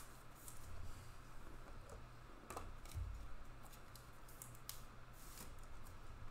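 Trading cards being handled and shuffled by hand: scattered light clicks and rustles of card stock and plastic, over a faint low hum.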